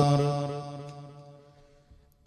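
The last held note of a man's chanted Arabic invocation, heard through a microphone, dies away over about a second and a half. Near silence follows.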